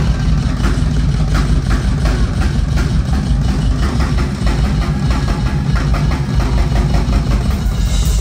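A heavy metal band playing live and loud, recorded close up: distorted guitar and bass thick in the low end, with a steady run of drum hits.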